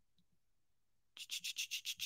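About a second of near silence, then a quick run of soft clicks, about eight a second: typing on a computer keyboard.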